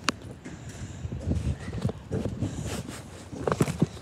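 Footsteps on concrete pavement with irregular low knocks, a sharp click just at the start and a few more knocks near the end.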